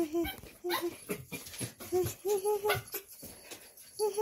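Excited toy poodles whimpering and snuffling while jumping up and licking in greeting, with short repeated pitched cries and quick rising whines.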